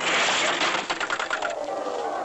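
Cartoon whirlwind sound effect: a burst of rushing hiss with fast rattling clicks, giving way about one and a half seconds in to a slowly falling whistle.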